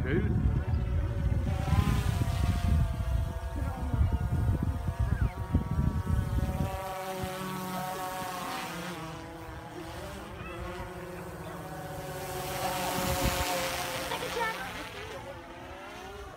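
DJI Phantom quadcopter's propellers whining overhead, the pitch of the several-tone whine wavering up and down as the drone manoeuvres, growing louder about thirteen seconds in as it comes closer. Wind rumbles on the microphone for the first half.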